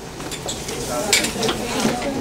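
Chalk scratching and tapping on a chalkboard while writing, in a few short, sharp strokes.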